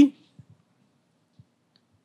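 A pause in a man's speech: his word trails off at the very start, then near silence with a few faint clicks.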